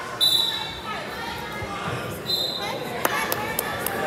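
Two short, high blasts of a referee's whistle, the second about two seconds after the first, over gym chatter. Near the end, a quick run of sharp slaps, about four a second.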